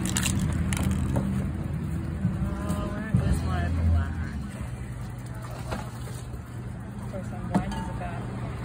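A few sharp knocks of metal aerosol spray cans being picked up and set down on a table, over a steady low rumble and distant voices.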